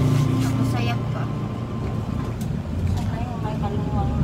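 Low, steady engine and road rumble inside a van's cabin, with faint voices.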